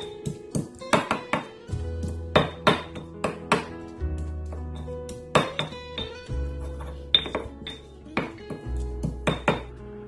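Granite pestle pounding garlic cloves in a granite mortar: repeated sharp stone knocks at an irregular pace, a couple a second, over background music with a steady bass line.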